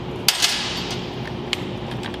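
Loose steel bolts being handled on a workbench: a sharp metallic clink about a quarter second in, with a brief ring, then a lighter click about a second and a half in.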